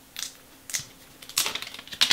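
Clear protective plastic film being peeled off the back of a smartphone, crinkling and crackling in short bursts, with the longest run near the end.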